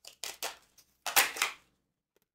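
Tarot cards being handled: a few short rustles and slaps of the cards, the loudest and longest about a second in.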